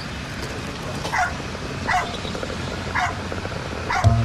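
A dog whining: four short, high yelps, each falling in pitch, spaced about a second apart.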